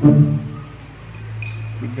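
A steady low hum under a man's speech, which is heard at the start and again just before the end. A faint, thin high tone sounds briefly past the middle.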